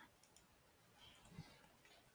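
Near silence with a few faint clicks of a computer mouse button, and a soft low thump about one and a half seconds in.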